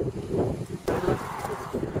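Wind buffeting the microphone, with faint voices talking in the background.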